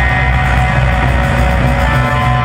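Live band music, loud and steady, with a guitar prominent over held notes and a strong bass.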